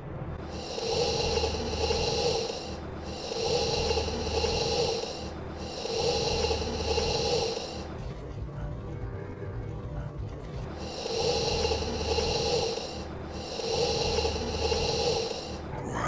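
A raspy, snore-like breath sound repeated as a loop: five near-identical bursts of about two seconds each, with a longer break in the middle.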